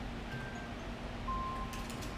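LG Zero smartphone powering off, giving two faint short electronic tones: a higher one early on, then a lower, slightly longer one a little over a second in. A low steady room hum runs underneath.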